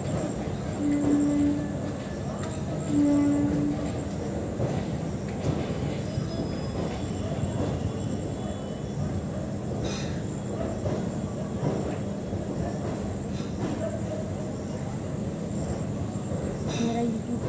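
Steady rumble of a railway train, with two short low hoots about one and three seconds in.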